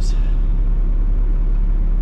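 Steady deep rumble of a Peterbilt semi-truck's diesel engine, heard from inside the cab.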